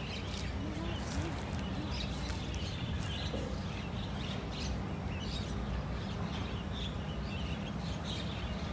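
A flock of Javan mynas calling, with many short, scattered chirps over a steady low background rumble.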